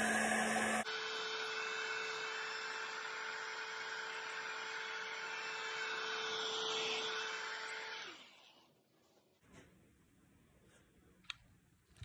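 Handheld heat gun running over fresh epoxy on bark to pop surface bubbles: a steady fan whir with a held hum, its note shifting about a second in. It shuts off at about eight seconds and winds down, leaving near quiet with a faint click.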